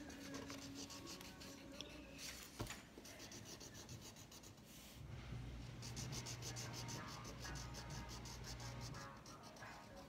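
Felt-tip marker scratching across paper in quick back-and-forth strokes as a dog is drawn and coloured in, faint. A low steady hum joins about halfway through and stops near the end.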